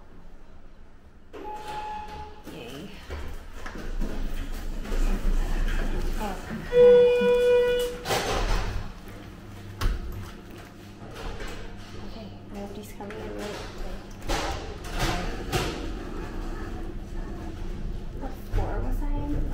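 Elevator arrival chime: one held, clear tone about seven seconds in, after a shorter, higher beep near the start, followed by the elevator doors sliding open.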